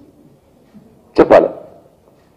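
A man's voice: after a pause of about a second, one short, loud spoken word at the microphone.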